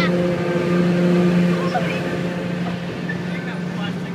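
Steady vehicle drone at freeway speed, heard from inside a car: a low hum holding one pitch over road noise. It is strongest in the first second and a half and eases off slightly after.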